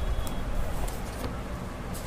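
Paper pages of a book being turned, a few faint rustles over a steady low rumble.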